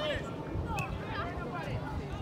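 Distant shouts and calls from several voices across an open football pitch, short and scattered, none close.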